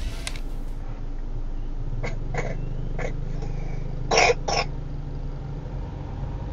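Dashcam audio inside a moving car: steady low engine and road noise, broken by a few short sharp bursts about two to three seconds in and a louder pair of them about four seconds in.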